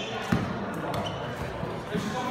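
Basketball bouncing on a hard gym floor: one sharp bounce about a third of a second in and another near the end.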